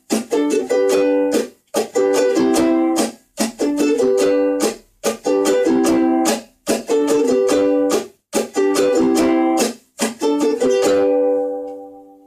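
Instrumental blues outro on a strummed acoustic string instrument: repeated chord strums in short groups, with no singing. The last chord rings out and fades away near the end.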